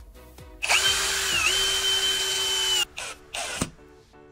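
Electric drill-driver driving a screw into a wall, its motor running in one steady whine for about two seconds with a brief dip in pitch under load, then a short second burst.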